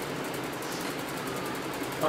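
Steady mechanical background hum and hiss with a fine, rapid, even flutter in the high range; no one speaks.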